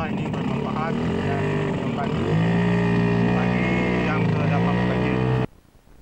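Speedboat engine running, picking up to a steady, higher, even pitch about two seconds in; the sound cuts off suddenly near the end.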